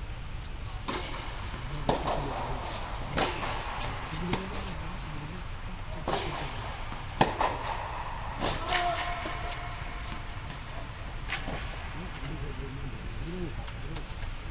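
Tennis ball struck by rackets and bouncing on a hard indoor court during a rally: about eight sharp cracks at uneven intervals of one to two seconds, the loudest a little past seven seconds in, then none after about eleven seconds. A steady low hum and faint murmuring voices lie underneath.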